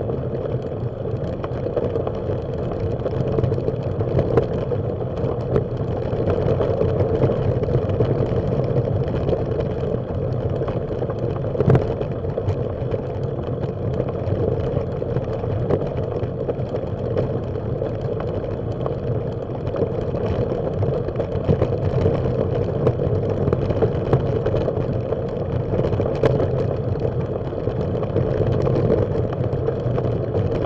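Bicycle rolling along a gravel path: a steady rumble and crunch of the tyres on loose gravel, with many small clicks and rattles from the bike, and one sharper knock about twelve seconds in.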